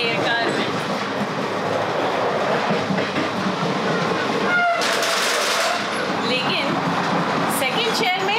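Running noise inside an AC chair car of a moving express train: a steady rumble with rail clatter, and a brief loud hissing rush about five seconds in.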